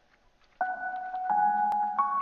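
A looped melody track from a hip-hop beat playing on its own, at its original pitch and at 87 beats per minute. Held notes come in about half a second in, and a lower chord joins just over a second in.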